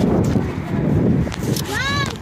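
Rumbling and rustling of a phone carried by someone running over dry grass and dirt, with a short high-pitched call that rises and falls near the end.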